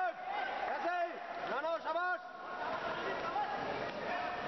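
Men shouting from around a boxing ring over the steady murmur of an indoor crowd, with loud rising-and-falling calls about one and two seconds in.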